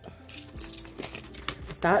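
Quarters clicking together a few times as they are gathered off a table, with the crinkle of a clear plastic binder pocket as they are put in.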